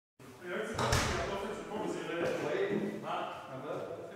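A person's voice, not in clear words, with a single thump just under a second in.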